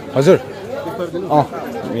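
People talking, with background chatter.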